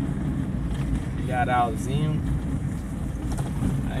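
A car driving on a dirt road, heard from inside the cabin: a steady low rumble of engine and tyres.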